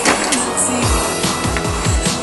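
Electronic soundtrack music: a sharp hit at the start, then a fast beat of deep kick drums comes in about halfway through.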